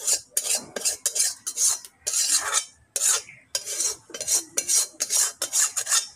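A spoon and spatula scraping the inside of a metal cooking pot in repeated short strokes, a few a second, as the last of a curry is scraped out into a bowl.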